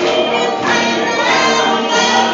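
Live gospel singing: several voices singing together through microphones and a PA system, with accompanying music.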